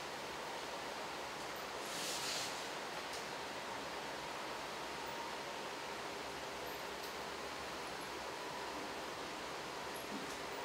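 Steady hiss of a room recording with no speech, with one short rustle about two seconds in.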